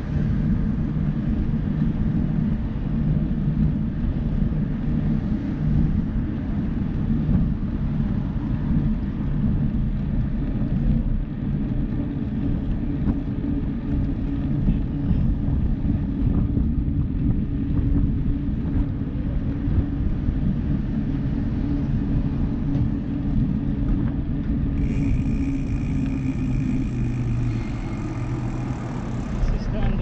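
Steady low rumble of wind buffeting a handlebar-mounted camera's microphone, mixed with bicycle tyre noise on asphalt, while riding at speed. About five seconds before the end a faint high, steady whine joins in.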